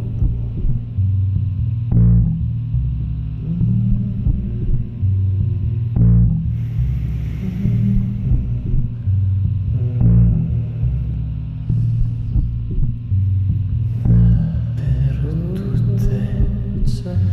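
Experimental sound-art music: deep, sustained bass notes that shift in pitch, with a short accent about every four seconds and a swell of hiss about halfway through.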